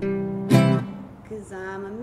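Classical-style acoustic guitar being strummed. A strong chord strummed about half a second in rings out and fades, followed by quieter held notes.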